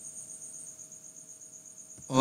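Crickets trilling faintly and steadily in two high-pitched, finely pulsing tones, with a faint low steady hum underneath.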